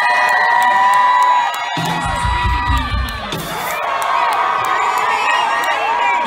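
Concert audience cheering, screaming and whooping at a live rock show, with a short burst of low bass from the stage about two seconds in.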